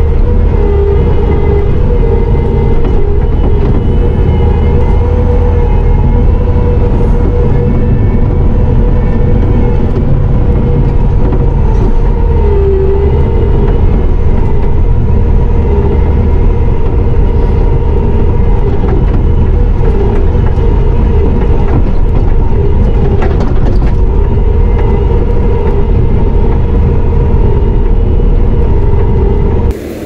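Bobcat T650 compact track loader's diesel engine running steadily under working load while grading dirt, heard from inside the cab, with a constant whine over a deep rumble. The sound cuts off abruptly just before the end.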